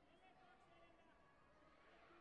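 Near silence: faint arena ambience with distant, indistinct voices.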